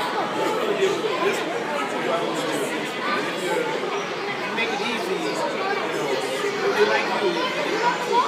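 Overlapping chatter of many children and adults in a busy indoor public space, a steady babble with no single voice standing out.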